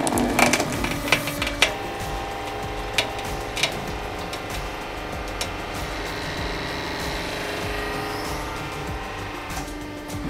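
Pineapple and pen being crushed by a homemade 150-ton hydraulic press: a burst of crunching and cracking in the first two seconds, then two more sharp cracks at about three and three and a half seconds. The press's hydraulic pump hums steadily underneath.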